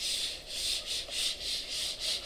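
Felt whiteboard eraser wiping a marker drawing off a whiteboard: quick back-and-forth hissing strokes, several a second.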